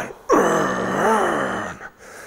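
A man's drawn-out groan of effort as he lifts a loaded barbell in a stiff-legged deadlift. It lasts about a second and a half, and its pitch dips and rises near the middle.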